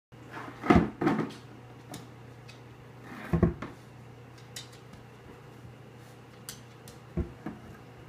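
A plastic container knocking on a wooden floor as a pet noses its head inside it: a cluster of knocks about a second in, another about three and a half seconds in and one near the end, with small light clicks between.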